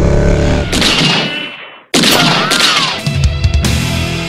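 Motorcycle engine and wind noise, cut by a falling whoosh that fades to silence just before two seconds in. Then a loud intro music sting starts suddenly, with a gliding tone and several sharp hits.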